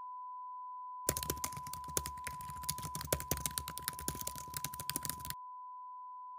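Computer keyboard typing sound effect: a rapid, irregular run of key clicks starting about a second in and stopping about a second before the end. A faint steady tone runs underneath throughout.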